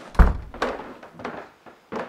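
Heavy footsteps stomping up wooden stairs: one deep thud, then a steady run of thumps about every two-thirds of a second.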